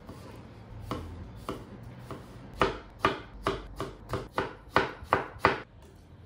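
Kitchen knife slicing a block of pink pickled daikon on a white cutting board, each cut ending in a knock on the board. A few spaced cuts come first, then a steady run of about nine quicker, louder strikes, roughly three a second, that stops shortly before the end.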